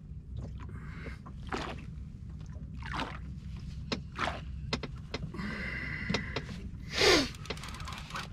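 A rod and reel being worked against a heavy fish from a small aluminium boat: scattered knocks and clicks, and a short high whine about five seconds in. Under it runs a steady low rumble of wind and water against the hull, and there is a strained exhale near the end.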